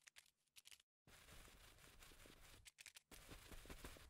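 Near silence, with faint small ticks and scratches that come a little more often toward the end.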